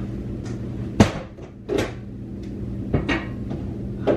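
Household knocks and bumps in a kitchen: a sharp, loud knock about a second in, a softer bump just under a second later, and another knock near the end, over a steady low hum.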